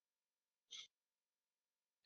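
Near silence, broken once less than a second in by a short, faint breath.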